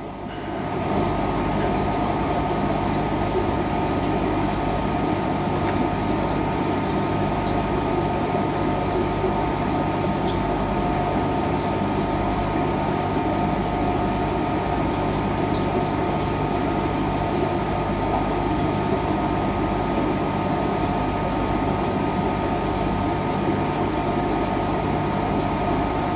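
Steady running of aquarium equipment, air pump and water filtration, heard as a constant hum with several steady tones over an even wash of noise.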